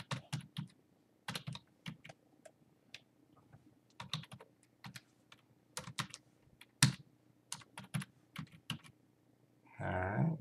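Computer keyboard typing: irregular key presses as figures and a reference number are entered, with one louder keystroke about seven seconds in.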